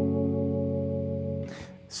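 An F sharp minor chord on a 1966 Fender Mustang electric guitar, played through a 1964 Silvertone 1484 tube amp with reverb. It rings out, slowly fading, and is muted about one and a half seconds in. A brief soft noise follows just before the end.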